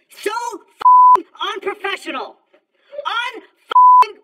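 Speech broken by two censor bleeps, flat steady beeps that cut in and out abruptly: one about a second in lasting about a third of a second, and a shorter one near the end, both louder than the voice.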